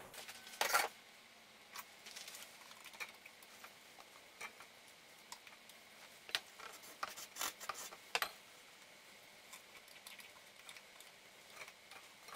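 Cloth rag rubbing and wiping inside a throttle body bore and around its butterfly valve, cleaning off carbon deposits: a string of irregular short scuffs and faint clicks, the loudest just under a second in.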